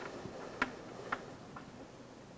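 A few light, sharp taps, about two a second, over faint room noise.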